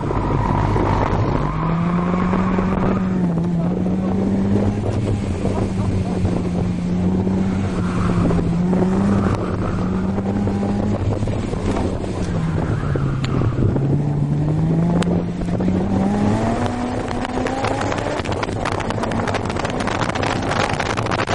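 Honda S2000's four-cylinder engine heard from inside the open-top cabin on track, with wind noise over the microphone. The engine note rises about a second and a half in and holds fairly level for several seconds. It sags to its lowest a little past two-thirds of the way through, then climbs steadily as the car accelerates.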